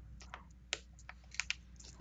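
A few faint, sharp clicks of pens being handled on a desk, with a steady low hum underneath.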